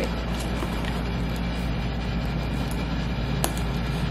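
Steady background noise, a constant hiss with a low hum, with a few faint clicks as the metal swivel clip of a leather bag's sling is handled and fastened.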